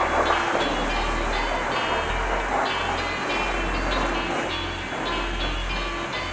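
Jet-wash lance spraying high-pressure water onto a motorcycle, a steady hiss of spray, over background music with a pulsing bass.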